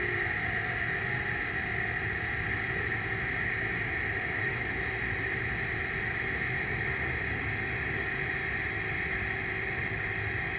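TIG welding arc on 2-inch schedule 10 stainless steel pipe, burning with a steady, even hiss as the root pass is tied in.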